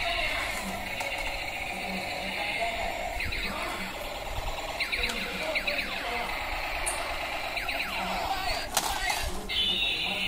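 Battery-powered toy tank robot playing its electronic sound effects: a steady buzzy tone with repeated sweeping, laser-like tones at intervals, and a sharp knock near the end.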